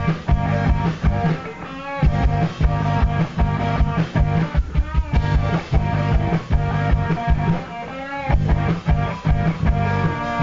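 A rock band playing live: electric guitar chords over a steady drum beat and bass.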